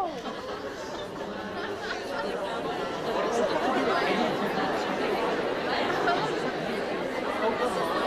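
A roomful of students chattering among themselves at once, reacting to a surprising claim; the chatter swells about three seconds in.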